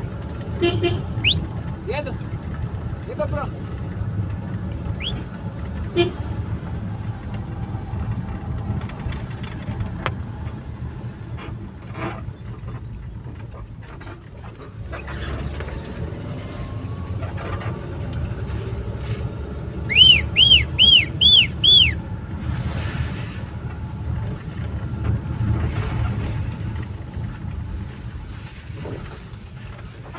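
A vehicle heard from inside its cabin: steady low engine and tyre rumble while driving on a wet road. About two-thirds of the way through comes a quick run of five short, high toots, the loudest sound here.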